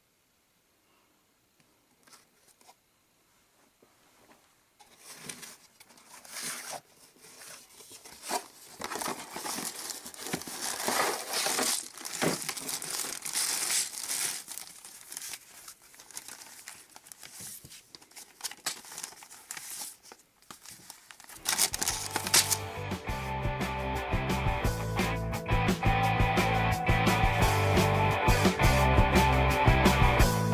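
A Lego set being unpacked: packaging crinkles, rustles and tears in irregular bursts after a few near-silent seconds. About three quarters of the way through, background rock music with guitar comes in and takes over.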